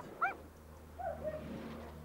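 German Shepherd giving a few short, faint whines, over a steady low hum.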